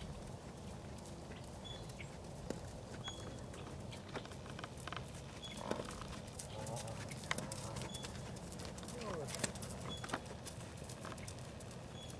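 Hoofbeats of a horse cantering on sand arena footing, soft thuds with scattered sharp clicks throughout.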